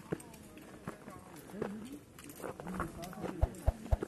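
Footsteps crunching and clicking on a stony dirt trail, with hikers' voices talking. Three heavy thuds near the end are the loudest sounds.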